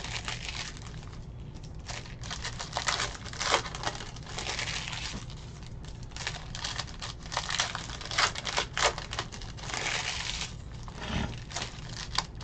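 Foil wrappers of Panini Phoenix football card packs crinkling and tearing as they are handled and ripped open by hand, in irregular bursts with two longer stretches of crinkling.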